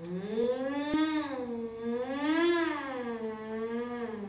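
A long, unbroken, wordless wail that sounds like a single voice. Its pitch rises and falls slowly in two swells, like a siren. A short sharp click cuts in about a second in.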